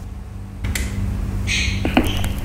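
ION turntable being started: a steady low hum, a soft hiss of the spinning record coming in, and one sharp click near the end as the stylus sets down on the vinyl.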